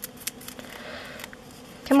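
Fingers flicking and tapping a small packet of sequins to shake them loose: a few light clicks and a faint rustle. The sequins are stuck and won't come out.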